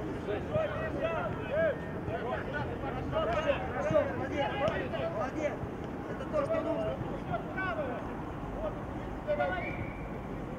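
Several voices shouting short calls across a football pitch during play, overlapping and unintelligible, over a steady outdoor background noise.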